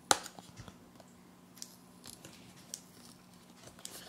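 Fingers picking at the sealing sticker on a small paperboard retail box: one sharp click at the very start, then scattered faint ticks and scratches of fingernails on the box.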